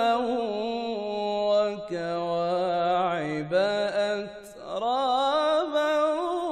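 A man's solo voice reciting the Quran in melodic tajweed style, on verses about Paradise. He holds long, ornamented notes that step down in pitch, breaks briefly for breath just past four seconds in, then rises again.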